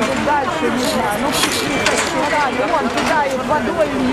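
Large outdoor crowd of many overlapping voices talking and calling out at once, with no single speaker standing out.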